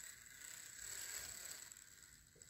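Model diesel locomotive's small motor and gearing running faintly as it rolls along the track, a light mechanical rattle under a steady high whine.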